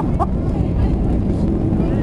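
Boeing 737 cabin noise during the landing roll: a loud, steady rumble of engines and airflow as the jet decelerates on the runway with its spoilers up.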